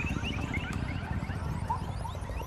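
Small birds chirping busily, many short quick chirps a second, over a steady low rumble.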